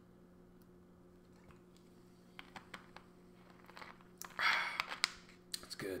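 Drinking from a plastic soda bottle: soft scattered clicks of swallowing and bottle handling, then a loud breath out about four seconds in.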